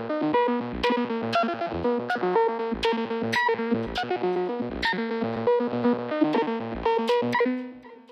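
Synth loop played through the Arturia Vocoder V software vocoder: rhythmic chords over short bass notes, with sharp percussive hits. It fades out near the end.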